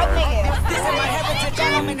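Several voices talking over one another, with a low bass tone held through the first part.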